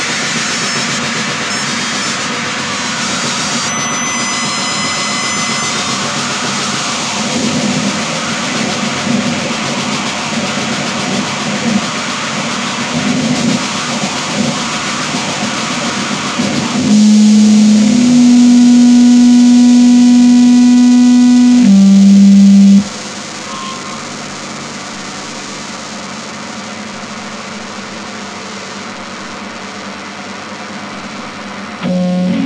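Noisecore music: a dense wall of noise. About 17 s in, a loud, steady low tone takes over, steps up and then down in pitch, and cuts off suddenly about 23 s in, leaving quieter steady noise.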